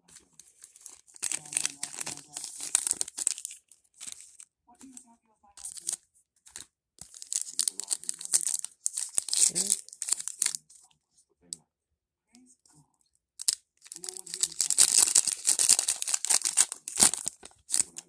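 A Panini Mosaic football card pack's wrapper being torn open and crinkled by hand, in three spells of crackly rustling, the last and loudest near the end.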